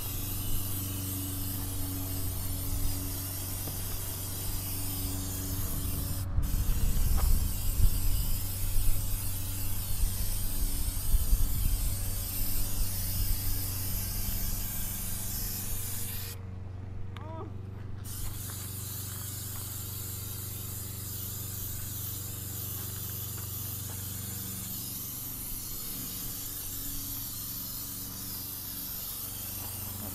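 Aerosol spray paint can spraying a steady hiss. It cuts out for an instant about six seconds in, and stops for about a second and a half a little past the middle before spraying again. A steady low hum runs underneath.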